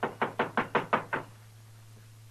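Knocking on a cabin door: a quick run of about seven knocks that stops just over a second in.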